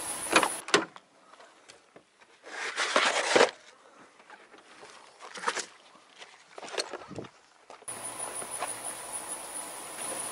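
A few knocks and clatters at an SUV's rear door while tools are fetched, the loudest a rattle about three seconds in; a steady outdoor hum takes over near the end.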